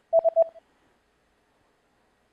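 Three quick electronic beeps at one pitch, lasting about half a second: a sound effect cueing the learner to give the answer.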